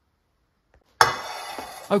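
Silence, then about a second in a metal frying pan is set down hard on a countertop: one sharp clank with a metallic ring that fades over about a second.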